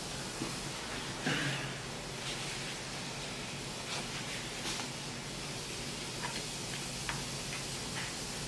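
Steady hiss of a close microphone with faint, scattered mouth clicks of closed-mouth chewing, and a brief rustle of a paper napkin wiped across the mouth about four seconds in.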